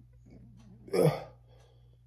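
A man's short involuntary grunt, 'uh', about a second in, as a test swab is worked up his nostril.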